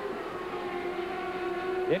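A 1995 CART Indy car's turbocharged V8 running at high revs as the car goes by, a steady high engine note that rises slightly near the end.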